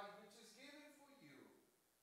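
A man's voice speaking quietly, trailing off into near silence in the last half second.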